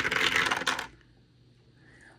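Two dice rattling and clattering down through a dice tower into its tray, coming to rest about a second in.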